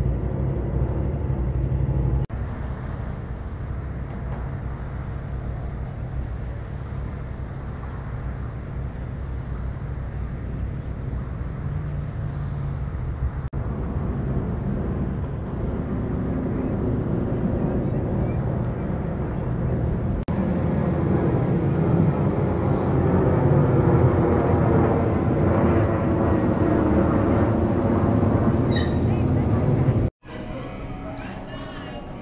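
Street traffic rumble with indistinct voices. The sound changes abruptly a few times, and it grows louder in the last third, where a vehicle passes close.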